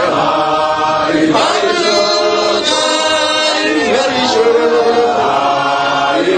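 A large congregation singing a hymn together, many voices holding long notes and sliding between them.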